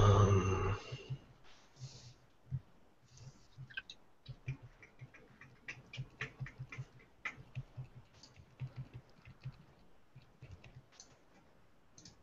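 Faint, irregular clicking of a computer keyboard and mouse, several clicks a second, busiest from about four seconds in.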